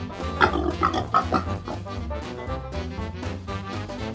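Pig grunting and oinking, a quick run of short grunts in the first second and a half, over cheerful background music.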